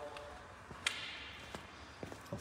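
Quiet room background with one sharp click a little under a second in and a few faint ticks.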